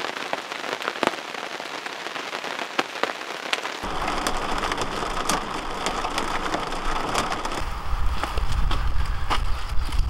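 Steady rain falling, with many scattered drops ticking sharply. About four seconds in it becomes a fuller patter of rain on a camper trailer heard from inside, with a low rumble added that grows near the end.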